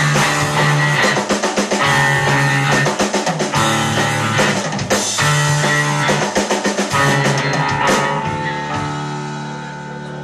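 Live instrumental rock from two electric bass guitars and a drum kit, played loud with hard drum hits. About eight seconds in the drums stop and a last chord is left ringing and slowly fading as the song ends.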